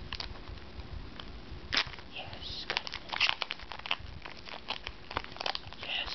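Foil wrapper of a Pokémon trading card booster pack crinkling and tearing as it is peeled open by hand: a run of sharp crackles, with one louder tear a little under two seconds in.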